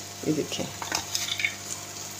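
A metal spoon stirring and scraping thick semolina halwa in a frying pan on the stove, with a soft sizzle of the halwa cooking, heard as faint scattered scrapes and clicks.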